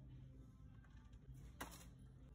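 Near silence with a steady low hum of room tone, broken about a second and a half in by one short knock as a cardboard activity book drops into a plastic shopping cart.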